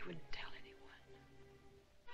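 Soft, low speech, a few words in the first second, over quiet orchestral film-score music holding a steady note.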